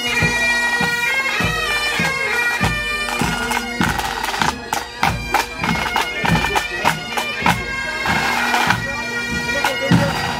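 Pipe band playing: Highland bagpipes sounding their steady drones under the chanter's melody, with drums beating a regular marching rhythm of roughly two strokes a second.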